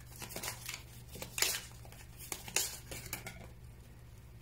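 Tarot cards being shuffled and handled in the hands: a run of short, crisp card flicks and rustles, the loudest about a second and a half in.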